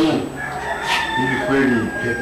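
A rooster crowing once, one long call of about a second and a half that drops in pitch at its end, over a man talking.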